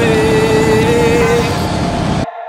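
Loud wind rush and road noise on the camera while riding a stand-up scooter in city traffic. A steady held tone with a slight wobble runs through the first second and a half.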